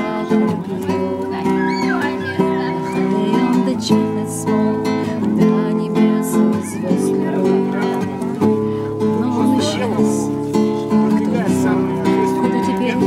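Acoustic guitar strummed in steady chords.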